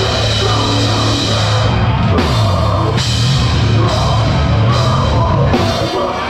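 A heavy, loud metalcore band playing live, led by a Pearl Masters Maple drum kit with Zildjian cymbals played hard over down-tuned guitars and bass. In the second half the cymbal wash cuts out briefly several times in stop-start accents, with a short drop just before the end.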